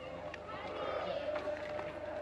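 Indistinct chatter of several people's voices in the background, over a steady hum.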